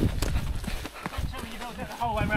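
Footsteps jogging on a gravel track, a crunch about every third of a second, with a man laughing near the end.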